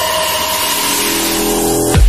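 Electronic dance music build-up: a rising noise sweep swells over held synth tones with the kick drum dropped out. The four-on-the-floor kick drops back in at the very end.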